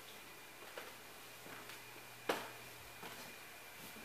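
Footsteps climbing wooden stairs: soft steps about every three-quarters of a second, with one much louder knock about halfway through.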